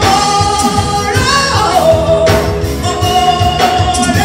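A woman singing gospel live into a microphone over a band with drum kit and cymbals, holding long notes that slide down in pitch about a second and a half in and again near the end.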